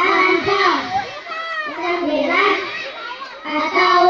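A group of young boys reciting a short Quran surah together in a melodic chant through microphones, with long wavering held notes between shorter phrases.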